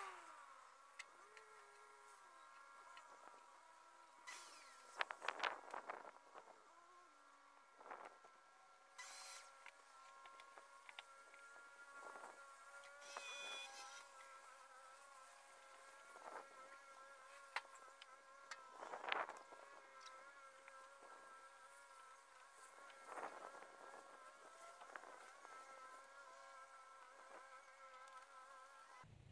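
Near silence: a faint, steady, slightly wavering hum of several high tones runs throughout, with scattered brief rustles and clicks.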